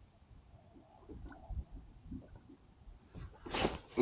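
Faint wind buffeting and small waves lapping against a fishing boat, heard as irregular low rumbles and light knocks, with a short rush of noise near the end.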